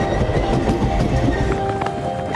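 A train passing, heard as a dense low rumble, under steady held notes of background music.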